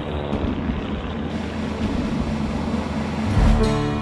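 Droning propeller engines of a formation of twin-engine WWII bombers, mixed with a background music score. The sound grows louder near the end.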